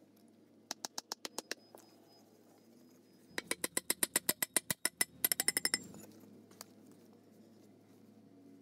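Steel fence-post pipe being driven into the ground, struck repeatedly on top: three quick runs of sharp ringing metallic taps, the longest in the middle.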